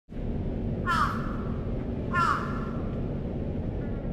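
A bird calling twice, about a second and a half apart, each a short harsh cry that slides downward, with a faint third call near the end, over a steady low rumble.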